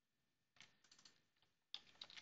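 Faint computer keyboard keystrokes: a few scattered key clicks starting about half a second in, the sharpest one near the end.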